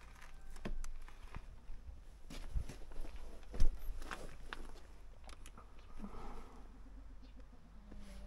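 Scattered clicks and knocks of hands working a pit bike's handlebar controls and then its carburettor, with one sharp knock about three and a half seconds in; the engine is not running.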